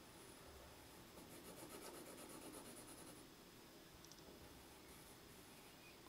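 Faint scratching of a colored pencil drawing on paper, a little louder from about one to three seconds in.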